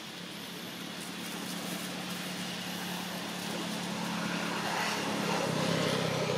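A motor vehicle's engine running, growing steadily louder as it approaches, with its pitch dropping near the end.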